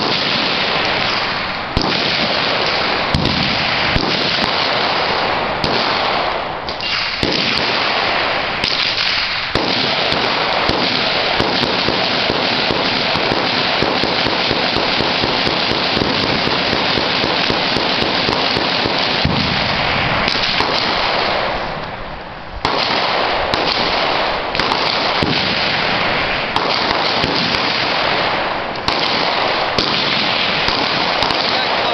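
Dense, continuous crackle of massed gunfire from many guns firing at once, much of it rapid, with no single shot standing out. It eases briefly twice, about six seconds in and again near twenty-two seconds.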